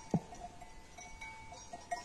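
Faint, distant bells of a grazing sheep flock tinkling irregularly, with one short knock just after the start.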